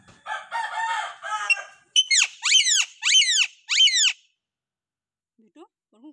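Alexandrine parakeet calling: a warbling call over a second long, then four loud screeches, each falling sharply in pitch, about half a second apart.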